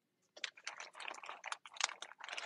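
Plastic-bagged chipboard packs being handled and shuffled: a quick run of small crinkles and light clicks starting about half a second in.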